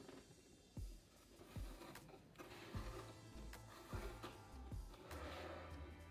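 Faint background music under soft handling sounds: a few light thuds and rustles as twine is drawn through holes punched in a cardboard box.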